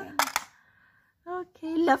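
A quick cluster of sharp plastic clicks from game pieces on a plastic snakes-and-ladders board, about a quarter second in.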